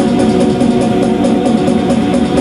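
Portable electronic keyboard playing an instrumental rock passage over a steady programmed drum beat, with no singing.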